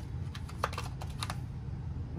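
Tarot cards being handled by hand, making a few light clicks and taps, mostly within the first second and a half, over a steady low hum.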